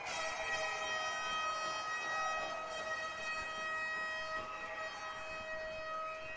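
Ice-rink goal horn sounding one long, steady tone right after a goal, starting suddenly.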